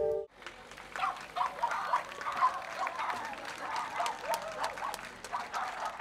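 A held ambient music chord cuts off at the start, then an audience applauds with scattered hand claps over a murmur of voices.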